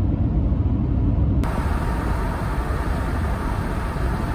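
Road noise inside a moving car: a steady low rumble. About a second and a half in it changes abruptly to a brighter, hissier rumble.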